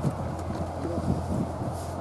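Steady low engine hum, like heavy road machinery idling, with faint voices in the background.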